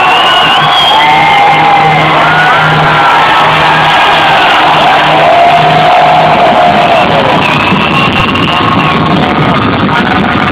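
Live hard rock band playing loud, recorded from within the crowd, with the crowd cheering over the music.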